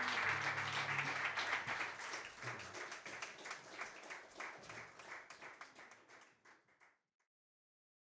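A small audience applauding with many hands clapping; the applause thins out and fades away about seven seconds in.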